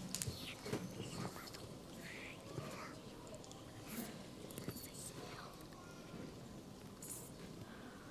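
Children whispering and murmuring faintly among themselves, with scattered small clicks and rustles.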